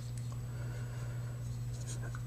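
Faint handling noise from fingers turning a Kershaw Nerve folding knife with G-10 handle scales and a steel pocket clip: a few light ticks and rubs over a steady low hum.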